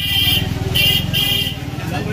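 A motor vehicle engine running close by with a steady low rumble. Several short high-pitched horn toots sound over it.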